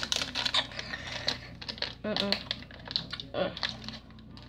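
A plastic Skittles packet being handled: rapid small crinkles and clicks from the wrapper and the candies inside.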